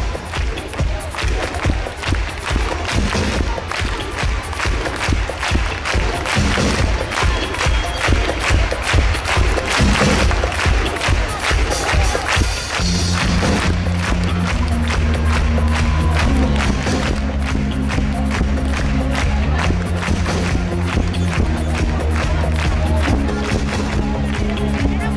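Live pop-rock band of drum kit, bass, electric guitar and keyboards playing loudly over a concert PA, with no lead vocal. A fast, driving drum beat carries the first half; about thirteen seconds in it gives way to sustained low bass and keyboard chords that shift every second or two.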